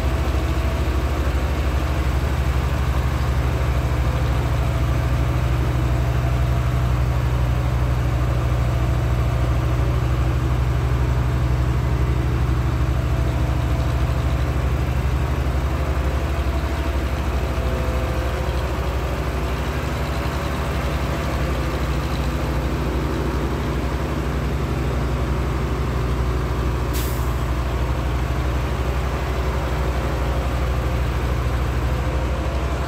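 A heavy truck engine idling steadily as a low, even hum, with one brief sharp hiss near the end.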